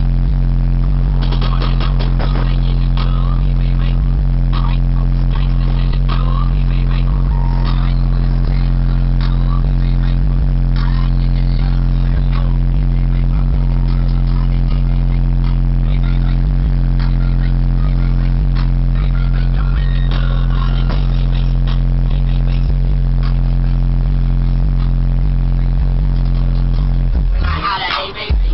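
Aftermarket car-audio subwoofers in a car cabin playing one held, loud, deep bass tone that stays steady for nearly half a minute and cuts off abruptly near the end. Scattered clicks and rattles run through it.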